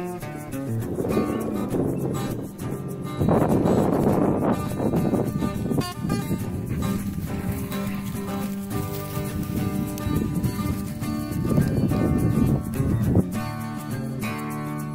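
Background music with an acoustic guitar, with several stretches of loud, even noise underneath.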